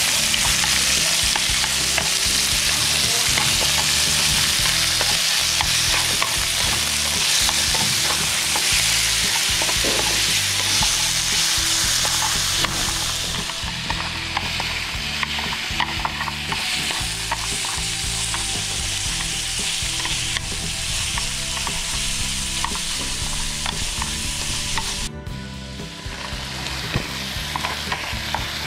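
Raw chicken pieces sizzling in hot oil in a steel frying pan as they begin to sear, stirred with wooden chopsticks that tick and scrape against the pan. The sizzle is loudest at first and eases off a little after about twelve seconds.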